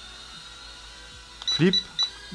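Faint steady whine of a tiny toy quadcopter's motors and propellers as it hovers, then near the end a few short, high beeps from its remote as the flip is triggered.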